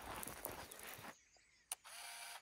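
Compact point-and-shoot film camera taking a picture: its shutter clicks once, sharply, near the end, and right after it the motor starts whirring to wind on the film. Before that, a second of faint rustling handling noise.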